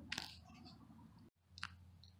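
Near silence: faint room tone with two short, faint clicks, one just after the start and one past the middle.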